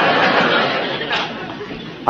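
Studio audience laughter after a punchline, fading away over about two seconds.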